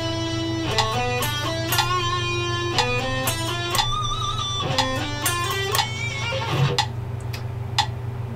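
Electric guitar picking a slow single-note exercise at 60 beats a minute. A steady run of separate notes climbs across the strings, with string changes made after an upstroke. A steady low hum sits underneath.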